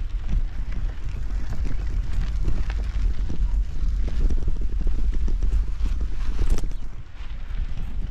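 Bicycle riding over a rough dirt road: irregular knocks and rattles from the bike and its handlebar-mounted camera, over a steady low rumble of wind on the microphone.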